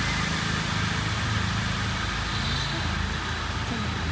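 Steady low hum and rushing noise, with faint voices in the background.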